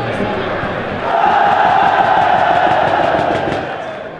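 Football supporters' stand chanting together: a loud mass chant of many voices swells about a second in, holds, and fades near the end.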